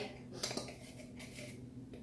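Faint clicks and scraping of a metal measuring spoon against a can of baking powder as a teaspoon is scooped out, with a few small clicks about half a second in.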